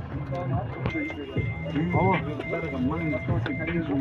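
Background voices of people talking, with a short high electronic beep repeating about twice a second through most of it.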